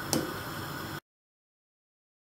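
A single light clink of a metal spoon against a stainless-steel pot while stirring thick soup, over a faint background hiss. About a second in, the sound cuts off abruptly to dead silence.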